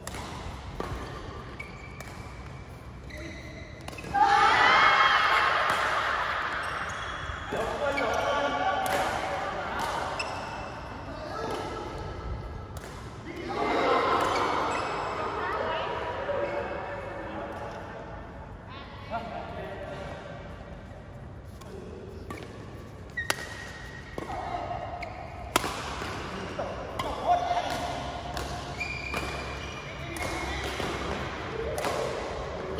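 Badminton racket strikes on a shuttlecock in an indoor hall, sharp irregular hits with a few louder ones in the second half. Voices talk and call out, loudest about four seconds in and again around the middle.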